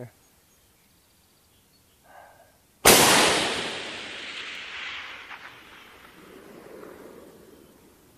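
A single shot from an 18-inch AR-10 in .308 Winchester about three seconds in: one sharp crack, then a long echo that rolls away and fades over several seconds.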